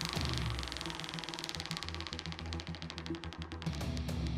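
Spinning prize wheel ticking, the clicks rapid at first and coming further and further apart as the wheel slows, over background music.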